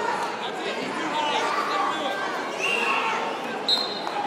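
Indistinct voices and chatter of spectators in a gymnasium, with one short, sharp referee's whistle blast near the end signalling the start of a wrestling match.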